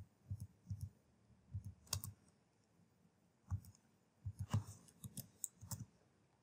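Faint keystrokes on a computer keyboard, short clicks in small runs, with a pause of about a second and a half near the middle.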